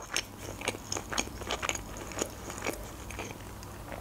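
Close-miked chewing of a mouthful of sushi: small wet mouth clicks and crackles at irregular intervals, fairly quiet.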